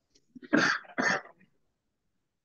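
A person coughing twice: two short, harsh coughs about half a second apart, starting about half a second in.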